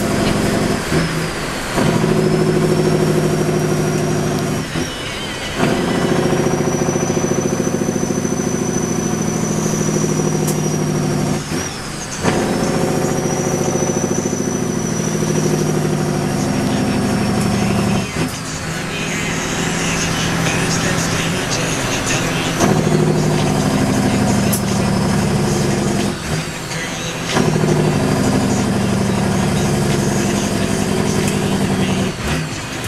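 Straight-piped Caterpillar diesel in a Kenworth W900L, heard from inside the cab, pulling hard through the gears. The engine note drops out briefly about five times, several seconds apart, as each gear is shifted. A high turbo whistle rises through each gear and falls at each shift.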